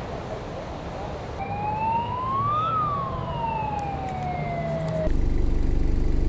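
Surf washing, with a single wailing tone that rises for about a second and then falls slowly, like one sweep of a siren. About five seconds in it cuts off abruptly, and a steady low engine hum takes over.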